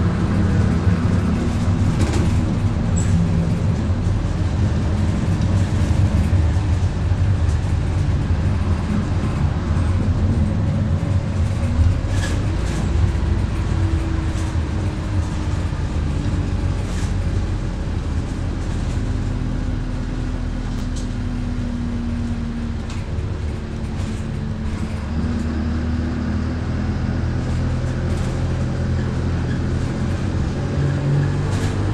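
Transbus Dart SLF single-deck bus on the move, heard from inside the passenger saloon: a steady engine and driveline drone with short rattles and clicks from the interior. The engine note rises a little after about eleven seconds, then slowly falls away over the next ten seconds before settling.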